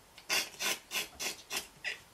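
A man's breathless, wheezing laughter: short unvoiced huffs of breath, about three a second, fairly quiet.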